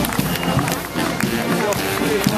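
A military marching band playing, heard over spectators clapping and talking and the footsteps of marching soldiers.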